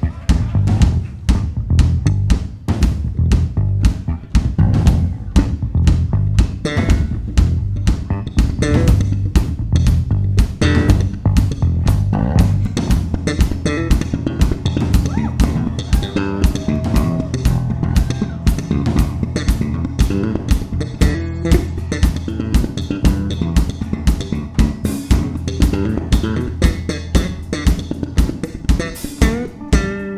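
Funk electric bass guitars trading lines in a bass battle over a steady drum-kit groove.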